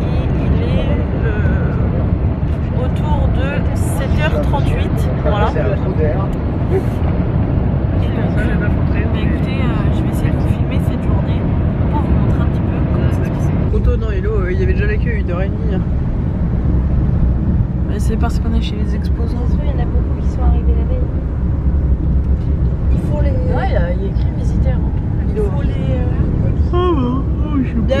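Steady low rumble of engine and road noise inside a moving minibus cabin, with passengers' voices chattering indistinctly over it. The rumble shifts in character about halfway through.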